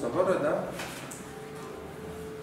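A voice speaking briefly, followed by a faint, steady held tone.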